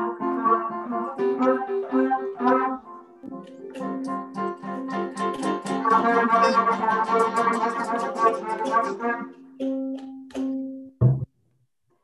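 Trumpet, melodica, piano, accordion and ukulele all played at once as loudly as possible, heard mixed through a video call, a jumbled din of overlapping held notes. It thins out and then cuts off suddenly about a second before the end.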